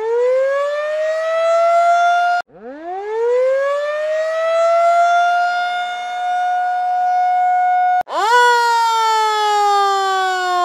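A siren winding up: a pitched tone climbs and levels off, cuts off abruptly about two and a half seconds in, then climbs and holds again. About eight seconds in it breaks off once more and comes back as a tone that slowly falls in pitch, like a siren winding down.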